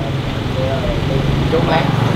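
A car engine idling steadily, a low even hum, with people talking in the background. The engine is most likely that of the Mercedes-Benz S450 in the driveway.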